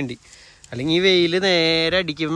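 Only speech: a man talking, with a short pause near the start followed by a long drawn-out word.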